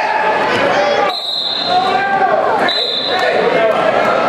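Referee's whistle blown twice to stop the wrestling: a half-second blast about a second in and a shorter one near three seconds, over crowd chatter in a large gym.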